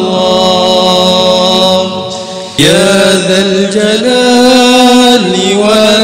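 Sung Islamic zikir chant: voices hold long, drawn-out notes. The sound thins briefly, then a new phrase begins about two and a half seconds in.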